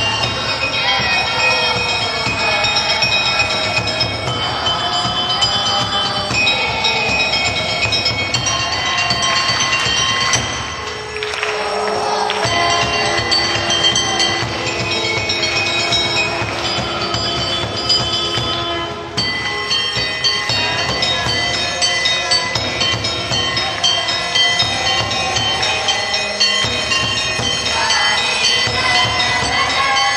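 Music of long held notes and a slowly moving melody, loud and steady, with two brief dips in level about a third and two thirds of the way through.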